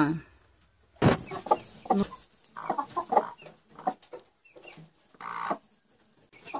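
Broody hen clucking in a run of short calls, after a single knock about a second in.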